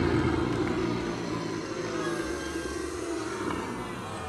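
Edited-in segment-transition sound: a low rumbling noise that slowly fades out, with faint voices in the background.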